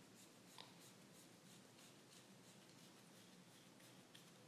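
Faint, rhythmic scratching of a comb backcombing (teasing) a section of hair, about four to five quick strokes a second, with one small click about half a second in.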